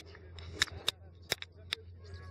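Four sharp clicks at irregular intervals over a low steady rumble, like small knocks from handling a hand-held camera.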